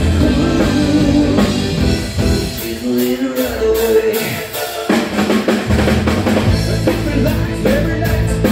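Live rock band playing drums, bass guitar and electric guitar with singing. About two and a half seconds in, the bass and kick drum drop out for roughly three seconds, leaving guitar and cymbals, then the full band comes back in.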